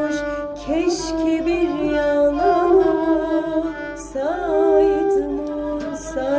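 A woman singing a Turkish folk song (türkü), holding long notes decorated with wavering ornaments.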